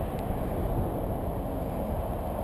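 Wind buffeting the camera microphone: a steady, gusty low rumble.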